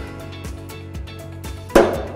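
A single sharp knock near the end: a drill chuck, fitted onto its Morse taper #2 / Jacobs taper #33 arbor, is struck arbor-end down on the wooden bench to seat the friction-fit taper. Background music plays throughout.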